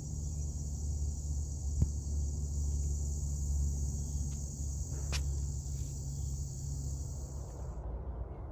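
Steady high-pitched chorus of singing insects over a low rumble on the microphone. The insect sound cuts off suddenly near the end, with short clicks about two seconds in and again about five seconds in.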